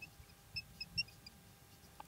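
Marker pen writing on a board, giving about half a dozen short, faint high squeaks as the strokes are drawn.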